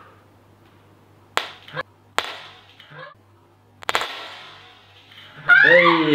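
A raw egg cracked on a forehead: two sharp knocks, then a crunching crack about four seconds in as the shell breaks and the egg splatters. Loud laughter breaks out near the end.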